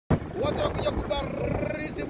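Road rumble and wind noise from a moving vehicle on a highway, with a person's voice talking over it.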